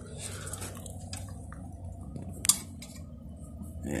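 Light metallic clicks from the bike's friction-drive engagement arm being handled, with one sharp click about two and a half seconds in, over a low rumble.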